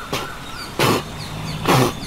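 Two short breathy grunts or heavy exhales from a man, a little under a second apart, with faint high chirping behind.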